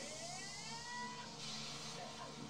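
Audio of the anime episode being watched: a pitched tone that rises over about the first second and then levels off, over a steady hiss.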